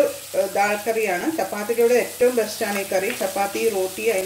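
Chopped onion frying in ghee in a nonstick wok, sizzling as a spatula stirs it, with a woman's voice talking over it throughout.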